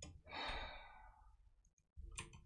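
A person sighing once: a long breath out that fades away over about a second.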